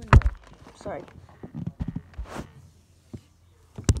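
Handling noise: scattered light knocks and thumps, with a brief rustling swish a little over two seconds in.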